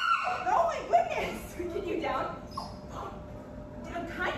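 A young Siberian husky vocalizing in short rising and falling cries, most of them in the first second or so, fading toward the end.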